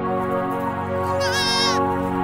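A young goat kid gives one short, quavering bleat a little over a second in, over steady, calm background music.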